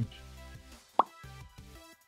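Quiet background music with a single short pop about a second in, a quick upward blip like an editing sound effect.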